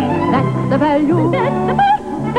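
Operatic-style singing of an advertising jingle for Sorbent toilet tissue: a voice with wide vibrato over instrumental accompaniment, moving through a run of short notes.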